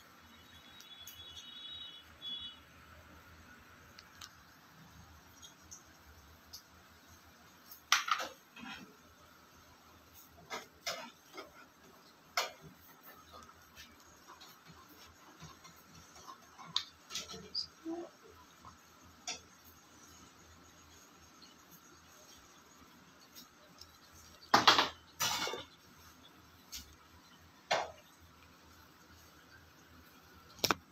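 Scattered light clicks and knocks of dishes and a plate being handled, with a sharp knock about eight seconds in and two louder knocks close together near the end, over a faint steady hum.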